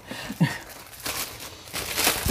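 Plastic wrapping crinkling and rustling as a diamond painting kit is handled and unpacked, with a short laugh about half a second in.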